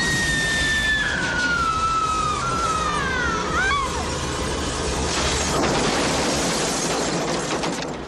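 A long, high scream that slowly falls in pitch for about four seconds, followed by a loud crash with shattering, over dramatic film music.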